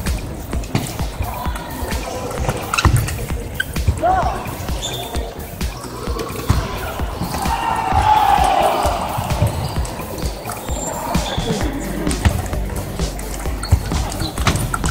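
Celluloid-type table tennis balls clicking sharply off rackets and tables in rallies, many quick knocks through the whole stretch, over a steady murmur of voices and play from other tables in a large hall.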